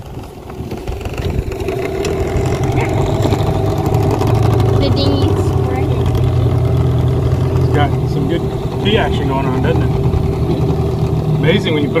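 Small Yamaha outboard motor on an inflatable dinghy running under way, growing louder over the first few seconds, then holding a steady hum. The motor has a freshly fitted water-pump impeller.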